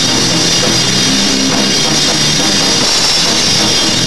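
Live punk rock band playing loud and steady: drum kit with a constant wash of cymbals over held low guitar and bass chords that change every half second or so.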